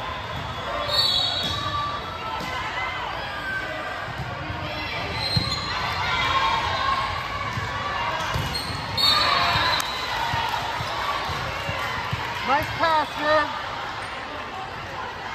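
A volleyball rally in an echoing gym: the ball is struck by hands and arms several times, with the sharpest hits about a second in, near the middle and about nine seconds in. Players' calls and spectators' chatter run under it, and a few short, high sneaker squeaks on the hardwood come near the end.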